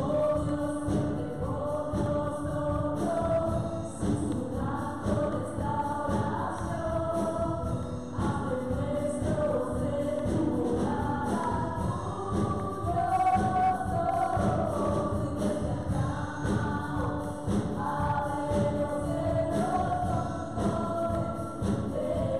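Live gospel worship song: several women's voices singing together into microphones over drums and keyboard, at a steady beat.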